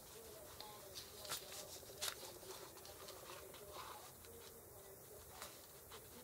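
Faint paper handling: hands smoothing and pressing a printed paper sheet down onto a paper-bag album page, with a few soft ticks and rustles about one, two and five seconds in.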